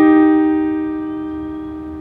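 A piano chord held down, ringing on and slowly fading away.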